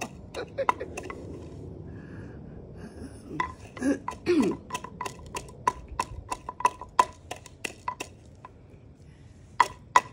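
Roasted coffee beans being crushed in a mortar with a wooden pestle. Sharp knocks come about three a second through the middle, pause briefly, then two hard strikes come near the end. A short vocal grunt comes about four seconds in.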